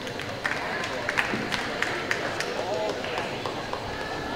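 Background hubbub of a gymnastics hall: indistinct voices with scattered sharp knocks and clicks.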